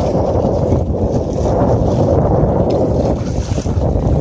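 Steady wind buffeting the microphone, over choppy water splashing against a kayak hull.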